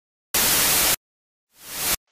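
A burst of static noise lasting over half a second that cuts off abruptly. After a short gap, a hiss swells up in loudness and stops sharply.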